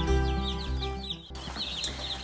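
A brooder full of two-day-old Jumbo Cornish Cross broiler chicks peeping, many short high cheeps several times a second. Background music fades under them and cuts off about a second in.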